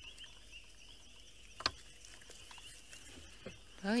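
Quiet night bush with a steady, faint, high-pitched insect trill, broken by one sharp click about a second and a half in.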